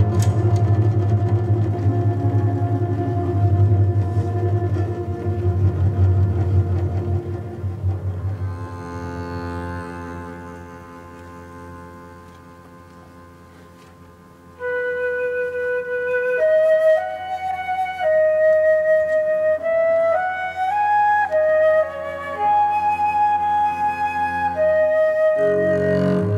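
A Russian folk-instrument orchestra playing with a contrabass balalaika and a double bass. A loud, held low chord fades away over the first half. About halfway through, a high, sustained melody line enters over quiet held chords, moving up in steps.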